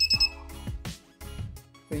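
A quick run of about four short, high electronic beeps from the Arduino coin changer's buzzer as key A is pressed on its keypad, confirming that coin changer mode is selected. Background music plays underneath.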